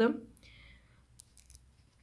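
Faint pen-and-paper handling: a short soft scrape, then a few light ticks as a ballpoint pen is moved over and tapped on a notebook page.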